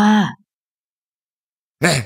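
A narrator's voice reading in Thai: one word ends just after the start, then about a second and a half of dead silence, and the next word begins near the end.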